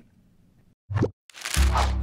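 Near silence, then a single short cartoon plop sound effect about halfway through, followed by background music with a deep bass line coming in.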